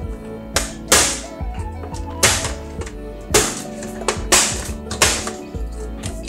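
About six sharp plastic clicks and taps, roughly a second apart, as the snap-fit top cover of a Roborock S50 robot vacuum is pressed down into place, over background music.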